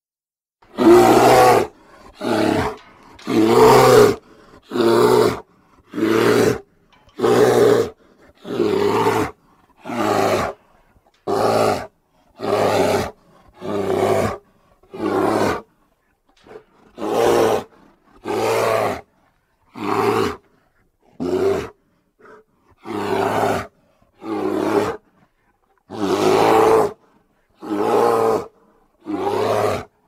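Grizzly bear roaring over and over: about twenty short roars, each under a second, coming a little more than a second apart with dead silence between them.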